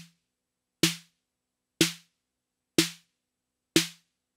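Roland TR-8 drum machine snare drum, triggered by MIDI notes from Ableton, playing a steady pattern of single hits about a second apart. Each hit is a short snap with a low tone under it that dies away fast. There are four hits, plus the tail of one as it begins.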